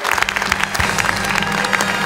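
An audience applauding, a dense patter of many hands clapping, over music holding a steady low chord.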